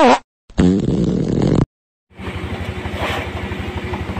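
A short edited intro sound effect with a falling pitch, a brief silence, then from about two seconds in a vehicle's engine idling with a fast, even pulse, heard from inside the vehicle.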